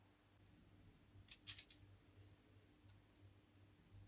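Near silence with a few faint, sharp clicks and crinkles, a cluster about a second and a half in and one more near three seconds, from a hand laying chopped dill onto a fish that rests on aluminium foil.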